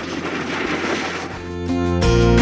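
Steady noise of street traffic, then acoustic guitar music fades in near the end.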